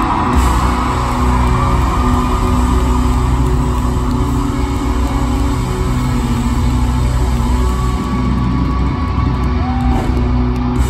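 Loud live band music through a concert sound system, with a steady heavy bass and sustained chords, heard from the audience in a large hall.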